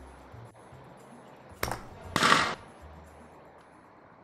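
A sharp snap from a miniature spring-steel bow being shot, then about half a second later a louder, short burst as the balloon target pops.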